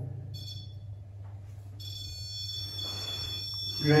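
Ghost-hunting REM pod on the bench sounding a steady high-pitched electronic alarm tone, faint at first and much stronger from about two seconds in; the alarm marks something disturbing the field around its antenna.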